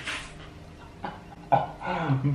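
A man's muffled, breathy laughter into his hands: a hissing exhale at the start that fades, then a few short, choked bursts near the end.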